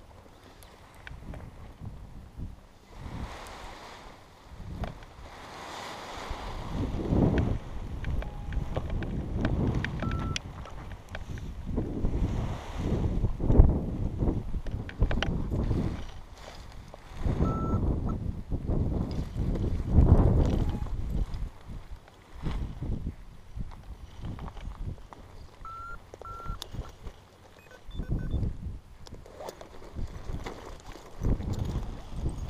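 Wind buffeting the head-mounted camera's microphone in repeated gusts, loudest about a third of the way in and again past the middle, over rustling of paraglider wing fabric and lines being gathered up by hand.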